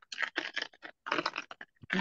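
Typing on a computer keyboard heard over a video call: a quick, irregular run of key clicks that thins out in the second half.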